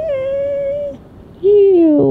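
Bedlington terrier 'talking': two drawn-out, pitched dog vocalizations, its attempt at "love you". The first is held steady for about a second, and the second, lower one comes half a second later and sags slightly in pitch.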